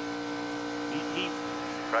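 NASCAR Cup Series stock car's V8 engine running at a steady, unchanging pitch, heard as a constant drone.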